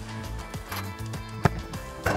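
A football kicked on the volley: one sharp strike of boot on ball about a second and a half in, over background music.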